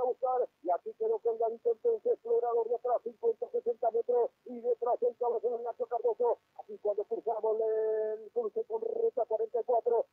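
Speech coming through a thin, narrow-band remote line: a voice talking steadily with short pauses, too muffled for the words to be made out.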